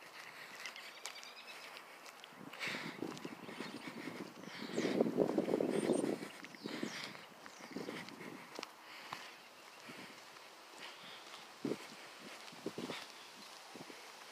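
Footsteps on a gravelly paved lane, scuffing and crunching at an uneven pace, with a louder burst of crunching and rustling lasting about a second and a half around five seconds in.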